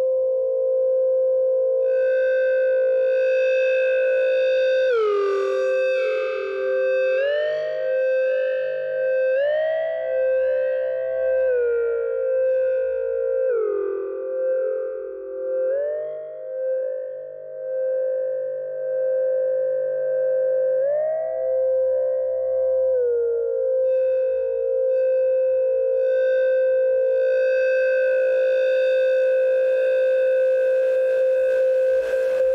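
Electronic synthesizer music: a sustained tone with overtones that slides down and back up in pitch every second or two through the middle, then settles on a steady held pitch again near the end.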